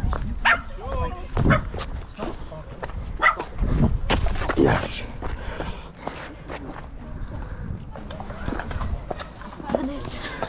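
Wind rumbling on the microphone, with scattered clicks and knocks. A small dog gives a few brief whines and yelps, mixed with short human exclamations.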